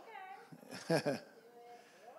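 A man's brief laughter and a spoken "okay": a short high-pitched laugh falling in pitch at the start, then the word about a second in, then a faint further chuckle.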